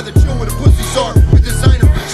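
Hip hop track: a rapped vocal over a beat with deep, punchy kick drums.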